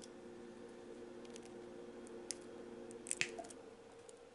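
Flush-cut snips clipping parts off a clear plastic sprue: a few faint clicks, with the sharpest snip about three seconds in.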